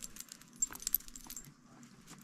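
Beaded bracelet clicking and jingling lightly as the hands shake out a freshly tied yarn pom-pom, with faint yarn rustle; the clicks thin out near the end.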